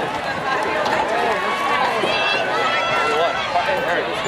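A crowd of people talking at once: a steady babble of many overlapping voices, none standing out.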